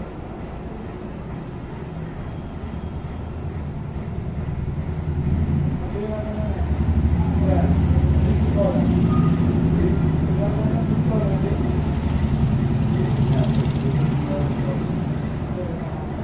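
A motor vehicle engine running with a low, steady rumble that grows louder about six seconds in and eases off near the end, with people's voices faintly over it.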